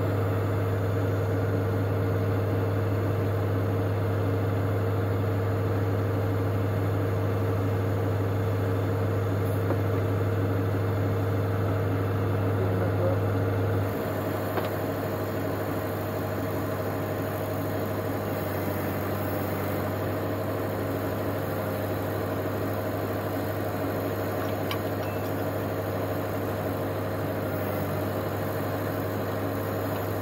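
John Deere tractor's diesel engine idling steadily, a little quieter from about halfway through.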